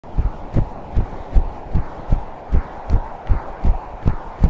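A deep pulse of even thumps, about two and a half a second, like a heartbeat, leading into the theme song; a faint steady rush runs underneath.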